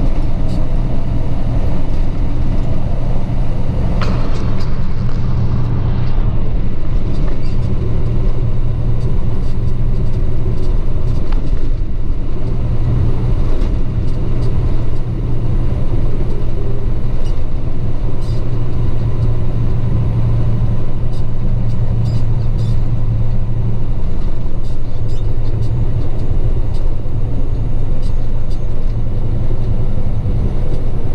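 Tractor-trailer truck engine running under way, heard from inside the cab as a steady low drone with road noise. There is a short hiss about four seconds in.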